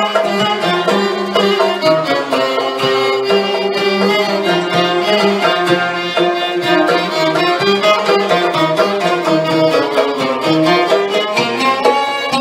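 An ensemble of ouds and violins playing a sama'i in maqam Hijaz Kar Kurd in unison: the violins bow the melody while the ouds pluck along, giving a steady stream of quick plucked notes under it.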